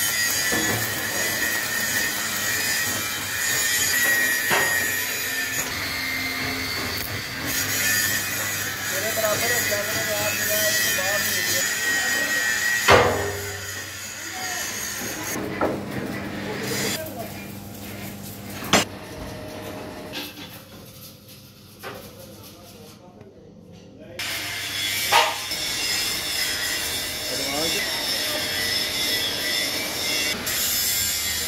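Electric arc welding crackling and hissing along a steel cylinder seam for the first dozen seconds, then a steel plate-rolling machine's low steady hum broken by a few sharp metal knocks.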